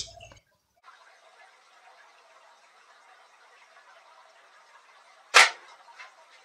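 A single shot from a .177 Crosman F4 air rifle at steel food cans, heard as one sharp crack about five seconds in, over faint room hiss.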